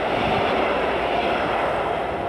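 Double-deck passenger train passing at speed through a covered station: a steady rush of wheel-on-rail rumble and air noise as the last coach goes by.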